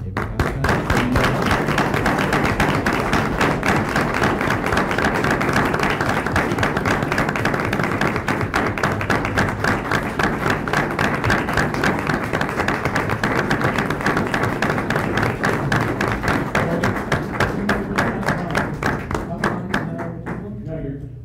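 A room full of people applauding: many hands clapping in a loud, dense, steady stream that starts at once and thins out only at the very end.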